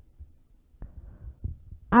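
Pause in a man's speech: faint, soft low thumps and two or three short clicks picked up by a headset microphone close to his mouth.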